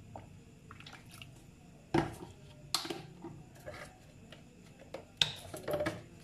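Kitchen handling sounds: a plastic measuring spoon and sauce bottles being handled over a plastic mixing bowl, with a few sharp taps and clicks, about two, three and five seconds in, between soft rustling.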